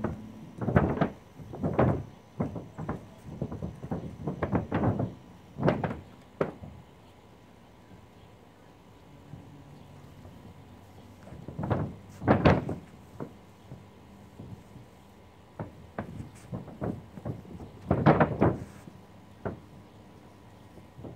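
Irregular thumps and knocks on a mobile home roof: footsteps in flip-flops and a long-handled paint roller working roof coating, coming in clusters with a quieter stretch in the middle.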